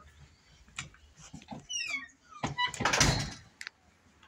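Metal door with a lever handle being let go and swinging shut: a few clicks and knocks, a short falling squeak about halfway, then a loud bang as it closes about three seconds in.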